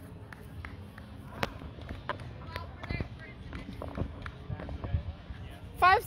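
Players' voices on a sand volleyball court, with a few sharp knocks scattered through, ending in a loud shout near the end.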